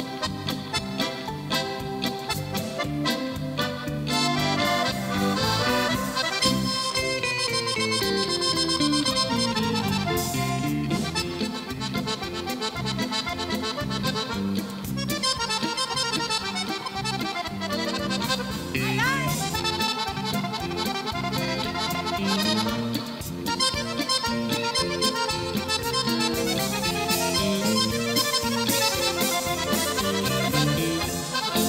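Chromatic button accordion played live in a fast solo, with rapid runs of notes that climb and fall and the bellows opening wide.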